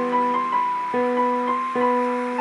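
Solo piano playing a slow, gentle melody over sustained chords, a new note or chord sounding about every half second.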